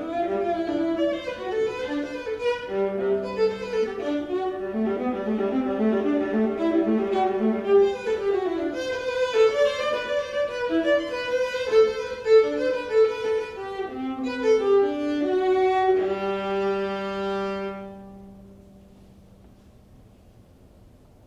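Solo violin playing a quick passage of running notes and double stops, then closing on a long held chord over the low G string about sixteen seconds in, which dies away a couple of seconds later.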